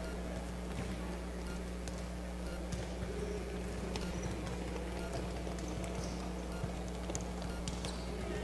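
Faint scattered thumps of volleyballs being bounced on the court and served, set against the steady low hum and murmur of a large hall.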